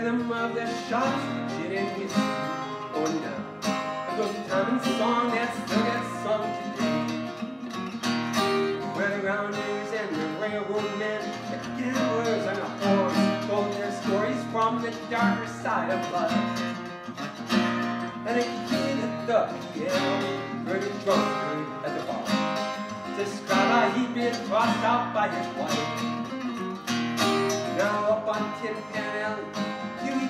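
A man singing while strumming an acoustic guitar, a solo live song.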